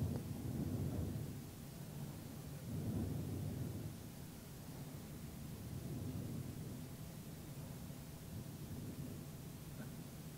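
Faint, low room rumble with no distinct event, swelling three times: near the start, about three seconds in, and around six seconds in.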